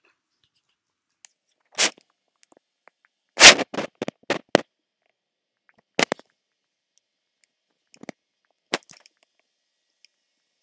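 A scattered series of short, sharp clicks and knocks against near silence. They come one at a time, with a quick cluster of four or five about three and a half to four and a half seconds in; the first of that cluster is the loudest.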